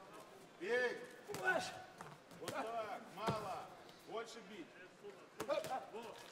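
Boxing match with men's voices calling out in short, raised shouts several times, and a few sharp thuds of punches landing.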